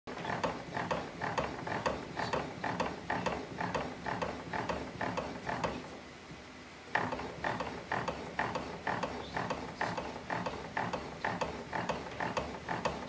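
Hand-operated bat rolling machine working a DeMarini CF Glitch composite bat through its rollers to break it in: a steady run of clicks, about three a second, with a short pause around the middle.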